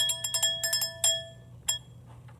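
A brass hand bell rung with a quick run of shakes for about a second, then a single last stroke near the end.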